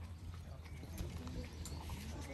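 Outdoor ambience: a steady low rumble with scattered soft taps and clicks.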